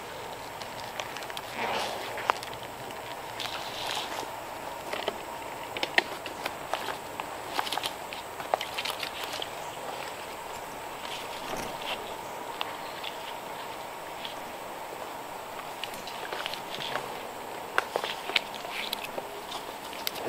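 Irregular clicks, scuffs and scrapes of a climber working up a tree trunk on a rope aider and climbing stick: boots against the bark and steps, with metal harness hardware clinking.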